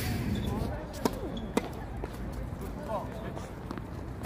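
Tennis ball knocks on a hard court, racket hits and bounces during play, with two sharp knocks about half a second apart around a second in.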